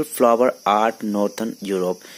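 A man speaking Hindi, with a steady, thin, high-pitched background noise under his voice.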